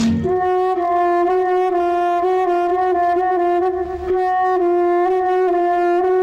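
Film-song instrumental music: a single horn-like note held for about six seconds over a soft low rhythmic backing, right after a busier guitar-and-drum passage.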